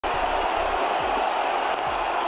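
Steady crowd noise from a stadium full of cricket spectators: a dense, even din of many voices.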